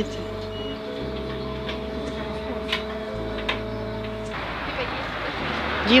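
Inside a moving trolleybus: steady running noise with a held whine, under background music. A little after four seconds it gives way to open street noise.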